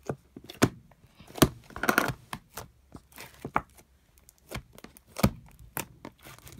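A large mass of slime with foam beads being kneaded and pulled by hand in a plastic tub, giving irregular sharp sticky pops and clicks, about one every second or so.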